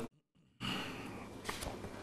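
A man's breath, audible on a clip-on lapel microphone, comes in after half a second of dead silence. A few faint clicks follow about halfway through.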